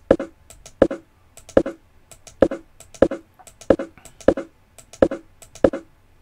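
Sharp computer input clicks, each a quick double click, repeating about once every three-quarters of a second: stepping a chess program through the moves of a game.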